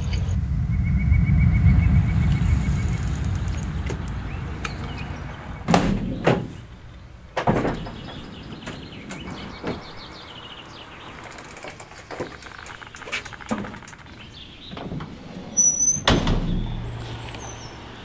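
A van's doors and a mountain bike being handled: a low rumble for the first few seconds, then sharp knocks about six and seven seconds in and another near the end.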